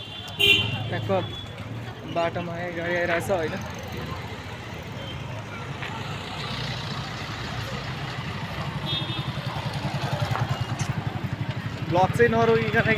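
Street traffic: a vehicle horn tooting briefly near the start and again, fainter, around nine seconds in. A motor vehicle engine runs with a low throb that grows louder through the second half.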